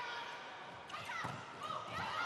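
Faint sports-hall sound of an indoor volleyball rally: a low crowd murmur with court noises and a single hit of the ball about a second in.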